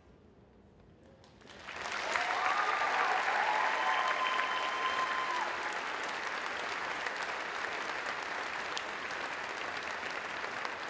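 Large arena crowd applauding at the end of a speech: the clapping starts about a second and a half in, builds quickly and holds steady, easing off slightly toward the end.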